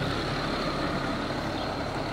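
Steady background rumble with a faint low hum and no distinct events.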